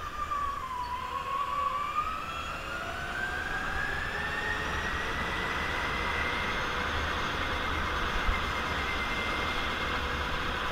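Go-kart motor whining as the kart accelerates out of a tight corner. Its pitch dips in the first second, then rises steadily for several seconds and levels off at speed down the straight. A single sharp click is heard near the end.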